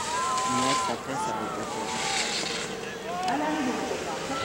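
Several voices calling out, some long held high-pitched calls, over a steady rushing background noise.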